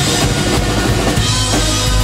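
A live rock band playing loudly, the drum kit to the fore with kick and snare hits over electric guitar and bass guitar.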